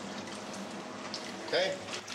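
Tap water running steadily into a kitchen sink while glasses are washed. A short spoken sound comes near the end.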